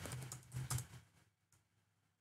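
Computer keyboard typing: a quick run of keystrokes over about the first second, then it stops.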